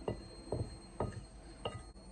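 Close-up eating sounds: soft, sharp mouth clicks about twice a second from someone chewing a mouthful of curry and rice, four in all.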